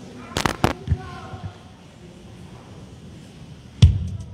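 Two sharp cracks a quarter second apart near the start, then a loud bass-drum hit near the end as a drum kit starts the music.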